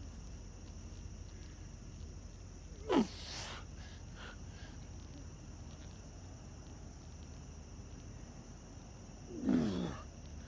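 A man's two short, loud breaths of effort, one about three seconds in and one near the end, each dropping in pitch as he strains through push-ups. Under them runs a steady high-pitched drone of night insects.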